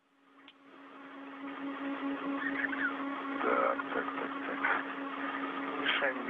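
Open space-to-ground radio channel: steady static hiss with a constant low hum, swelling in over the first two seconds, with faint garbled fragments in the middle.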